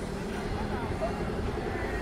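Street ambience: a vehicle engine running with a steady low hum, under the faint voices of people nearby.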